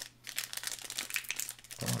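Foil wrapper of a Panini Mosaic trading-card pack crinkling and tearing as hands pull it open, in quick irregular crackles.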